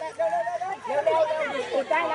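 Voices of a group of people chattering and talking over one another.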